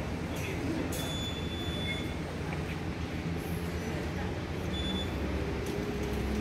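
Railway platform background: a steady low rumble of distant traffic and machinery, with a few brief high-pitched chirps and faint voices.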